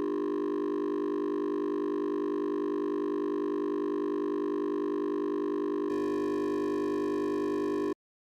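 Steady electronic synthesizer drone made of several held tones. It shifts to a slightly different chord about six seconds in and cuts off abruptly at the end.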